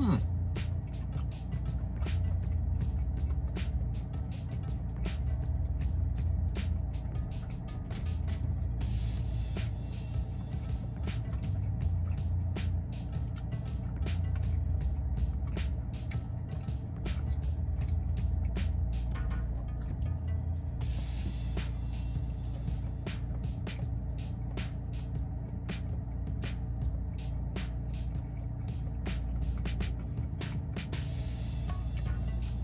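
Background music of sustained chords over a low bass line that changes every second or two. Over it come frequent short clicks and smacks of close-up chewing as a man eats a cheeseburger, with denser crunchy stretches twice.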